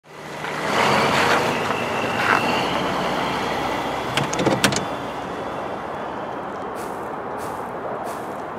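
Pickup truck engine idling, with a cluster of sharp clicks about halfway through. Footsteps begin near the end, about one every two-thirds of a second.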